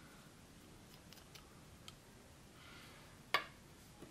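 Faint handling sounds of a small plastic fountain pen being unscrewed and taken apart, with a few soft ticks, then one sharp click about three seconds in as a plastic pen part is set down on the hard tabletop.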